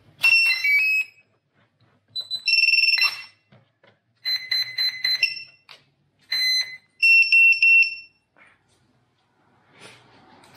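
Power-up beeps from a flying wing's flight electronics as the battery is connected. About five groups of short electronic beeps at several different pitches follow one another over roughly eight seconds, the normal start-up tones of the flight controller buzzer and ESC.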